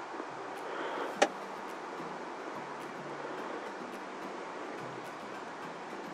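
Steady background hiss with a low hum, and one sharp click about a second in, the click of a computer mouse.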